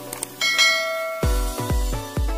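Two quick mouse-click sound effects, then a bright notification-bell chime that rings on. About a second in, electronic dance music with a deep, pitch-dropping bass kick about twice a second takes over.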